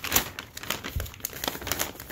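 Close crinkling and rustling with many small irregular crackles, the sound of a shiny plastic-like surface rubbing against the phone's microphone. It is loudest just after the start.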